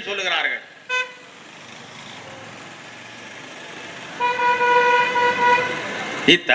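Vehicle horn: a short toot about a second in, then a long steady honk on the same pitch for nearly two seconds near the end, over a steady background hiss.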